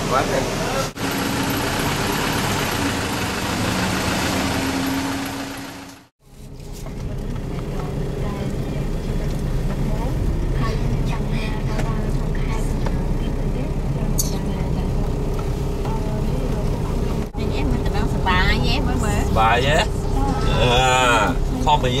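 Car engine and road noise heard inside a moving vehicle: a steady low rumble with a faint even hum. Before that, a steady hiss cuts off abruptly about six seconds in. Voices talk over the rumble near the end.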